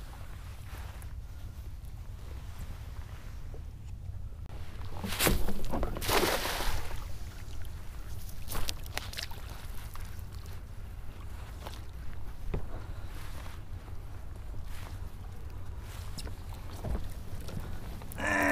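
A cast net being hauled back by its rope to the side of a kayak: water and rope-handling noises over a steady low wind rumble on the microphone. There is a louder rush of noise about five to seven seconds in.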